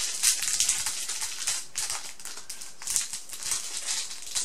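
A bundle of small makeup brushes rattling and clicking against one another as they are handled in the hand and one is picked out of the bunch: a dense run of light, quick clicks.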